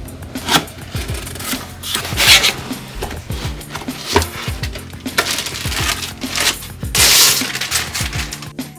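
Cardboard box flaps and a plastic-bagged network switch being handled, with rustling and scraping bursts, the loudest about two seconds in and about seven seconds in, over background music.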